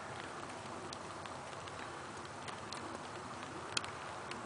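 Quiet outdoor background hiss with a few faint, scattered clicks; no engine running.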